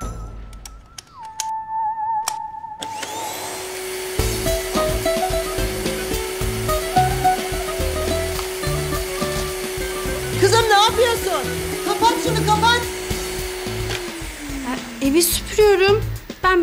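Canister vacuum cleaner switched on a few seconds in and running with a steady loud whir and hum. Near the end its motor winds down with a falling pitch as it is switched off.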